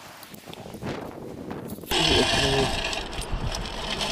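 Sand and pebbles shaken in a metal beach sand scoop, rattling and hissing. About halfway through, it gets suddenly louder, with short metal detector tones that step in pitch.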